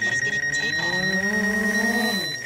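DJI Phantom quadcopter's propellers whining as it lifts off and climbs, the pitch rising slowly; it flies normally after a crash. A high, rapidly pulsing beep sounds over it.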